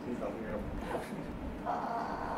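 A woman's muffled, pained vocal sounds under deep hand pressure on her hip and buttock, ending in a held groan that starts near the end.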